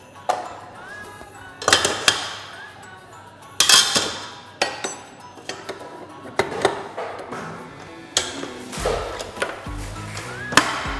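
Background music with sharp, ringing percussive hits every second or two.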